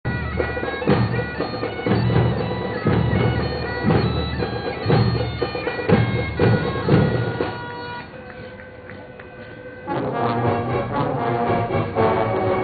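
Bagpipes playing a tune over a steady drone, with marching drum beats about once a second. Around eight seconds in the drums drop out and the music quietens, then the band comes back in fuller near ten seconds.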